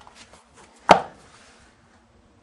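A single sharp knock about a second in: a hardback book set down on a hard surface, with faint handling rustles around it.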